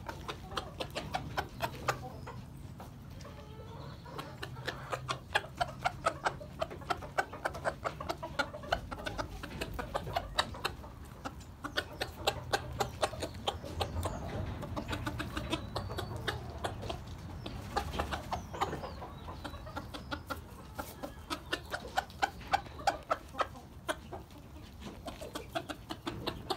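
Chicken clucking: a near-continuous run of short, clipped clucks, several a second, in bursts with brief pauses.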